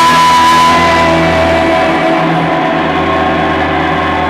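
A live rock band playing amplified, with electric guitar and a woman's voice singing into a microphone.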